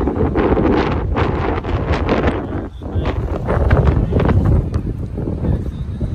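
Wind buffeting the microphone: a loud, uneven rumbling noise that swells and drops in gusts.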